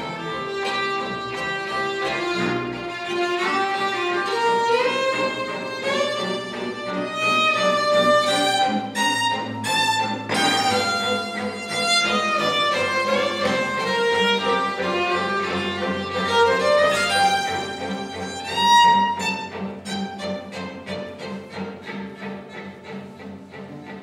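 A workshop orchestra of violins and other bowed strings, double bass among them, playing a conducted free improvisation: overlapping held notes and slides. Near the end it turns to short repeated notes that fade away.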